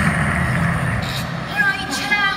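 Indistinct voices over a steady low rumble, with a clearer pitched voice coming in near the end.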